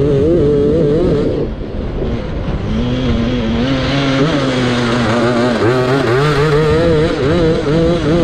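Grass-track racing kart engine heard from the driver's seat: high revs with a wavering pitch, easing off about a second and a half in, running lower through the middle, then picking up and revving high again near the end, over a steady rushing noise.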